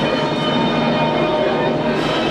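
Steady droning ambience: a continuous noisy wash with several held hum tones, unchanging in level throughout.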